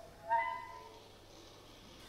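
A single short pitched note, rising slightly as it starts about a third of a second in and fading away within about half a second.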